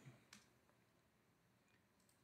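Near silence: quiet room tone with one faint, short click about a third of a second in.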